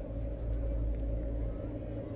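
Low, steady drone of a dramatic TV background score, a sustained deep rumble with held tones above it.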